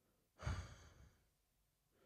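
A woman's weary sigh into a close microphone: one breathy exhale about half a second in, fading away within about half a second.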